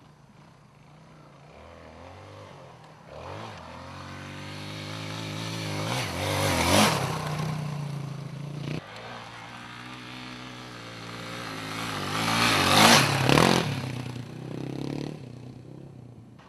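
Off-road dirt bike engine revving hard under load on a steep climb. It grows louder to a peak about seven seconds in, drops off suddenly, then surges to a second, louder peak near thirteen seconds before fading.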